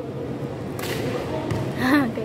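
Sounds of a basketball game in a gymnasium: a murmur of players' and spectators' voices with two short, sharp noises, the louder one near the end.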